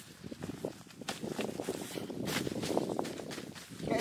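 Rustling and light scraping of the tent's groundsheet and gear as hands work inside a Lanshan 2 tent, in irregular short crackles and soft knocks.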